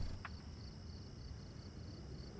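Crickets chirping in a quiet night ambience, a high, regular chirp about three or four times a second, as a low rumble drops away at the very start.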